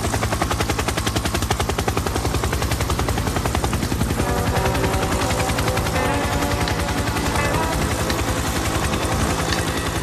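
Helicopter rotor chopping in a fast, steady beat throughout. Sustained music tones of the song's intro come in about four seconds in.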